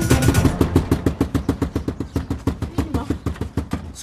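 Fast, even percussive pulse of background music, about eight beats a second. The melody drops out in the first half second and the beat runs on alone, fading away toward the end.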